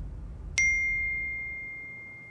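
A single bright electronic ding about half a second in, ringing on as one clear tone that slowly fades: a smartphone's message notification, announcing an incoming text.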